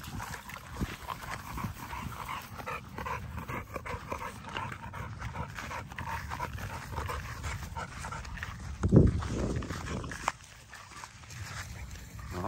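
An XL bully puppy making short, faint dog sounds, many in a row, while it wades in shallow water. About nine seconds in there is a loud, low thump.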